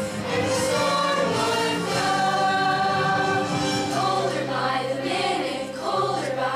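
A choir of young voices singing long, held notes together over musical accompaniment in a stage musical number.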